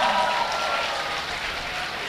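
Audience applauding in a hall, the applause slowly dying down.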